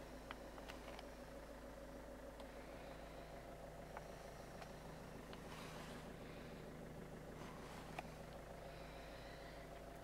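Faint steady hum inside a car's cabin, with a few soft clicks.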